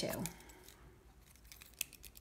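Faint, scattered taps and scratches of a pen and hands on a paper notebook page, with one sharper click a little before the end.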